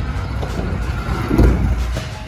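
Stunt scooter wheels rolling on a concrete ramp: a low, steady rumble that swells about one and a half seconds in.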